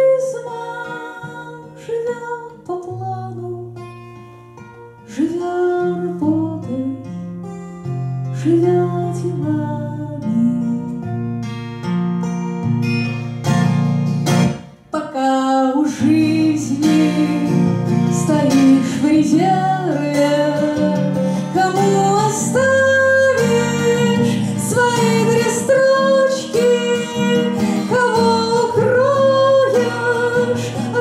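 A woman singing live to her own twelve-string acoustic guitar. The guitar is quieter for the first few seconds, then strummed fuller from about five seconds in, with a brief drop near the middle.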